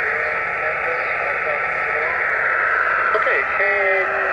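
Shortwave SSB receiver hiss from a Yaesu FT-817 on the 17-metre band, a steady narrow band of noise, with a weak, slightly warbly station's voice starting to come through near the end.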